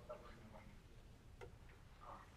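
Near silence: lecture-hall room tone with a faint steady low hum and one faint click about one and a half seconds in.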